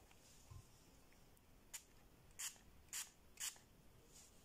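Pump spray bottle of rose water giving three short sprays about half a second apart, with a faint click just before the first.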